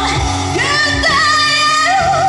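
A woman singing a pop ballad live into a microphone over a recorded backing track, through the stage PA, holding a long note with vibrato.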